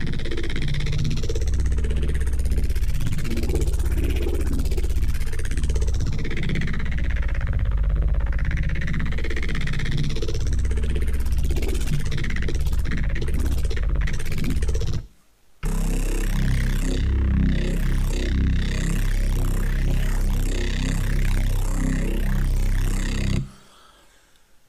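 Neuro bass synth patch, built from two FM8 instances and a Native Instruments Massive, played back through a sine-fold saturator, a fully wet chorus and a little Camel Crusher tube distortion. It is a loud, heavy bass whose upper tone sweeps and shifts continuously. It cuts out briefly about fifteen seconds in, resumes, and stops near the end.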